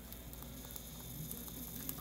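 Bugles corn chips burning with small flames: faint, scattered ticks and crackles over a steady low hum.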